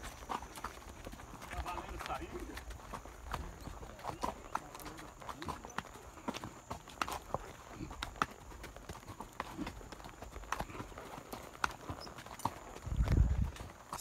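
Horses' hooves clip-clopping on a dirt track: a string of irregular dull clicks from more than one horse. A low rumble rises near the end.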